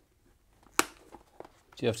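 One sharp plastic click about a second in, followed by a couple of faint ticks: a motorcycle helmet's liner or cheek pad being snapped back into its clips in the shell.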